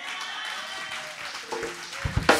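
A congregation applauding steadily, with a few faint voices among the clapping.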